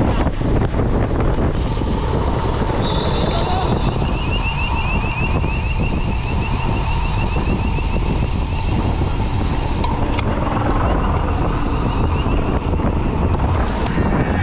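Wind buffeting the microphone of a camera mounted on a racing bicycle, with tyre and road noise as the riders ride along. A fast, high-pitched ticking runs for several seconds in the middle.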